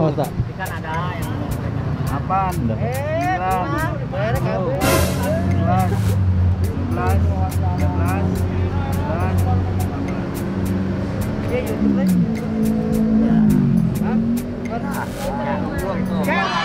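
Men's voices chatting and laughing over background music, while a motor vehicle engine runs and its note falls near the end.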